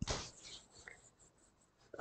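Faint scratching of a pen writing, with a brief louder sound at the very start.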